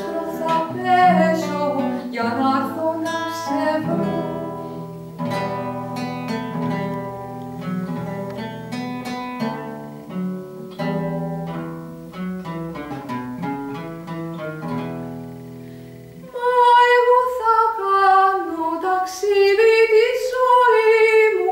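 Classical guitar playing a solo passage of plucked notes, gradually getting quieter. About four seconds before the end, a woman's singing voice comes back in, louder.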